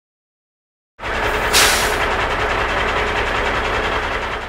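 Silence for about a second, then a loud, steady, machine-like noise with a deep low end and a brief sharp hiss soon after it starts. It runs on unchanged.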